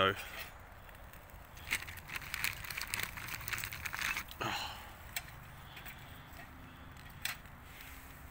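Kindling burning in a stainless-steel twig stove, crackling with irregular sharp pops, thickest in the first half, with one brief falling squeal about halfway through.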